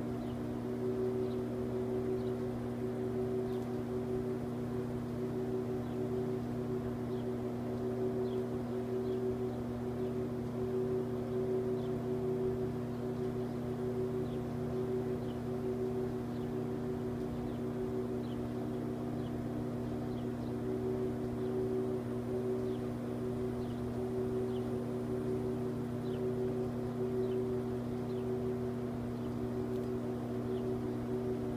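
A steady machine hum made of a few constant low tones, unchanging throughout, with faint short high ticks scattered through it.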